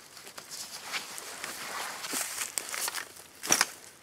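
Rustling and crunching of nylon gear and dry leaf litter as a military ALICE backpack is taken off and set down on the forest floor, with one brief, louder crunch about three and a half seconds in.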